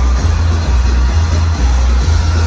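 Loud electronic dance music from a DJ set over the venue's speakers, with a heavy bass that pulses about twice a second.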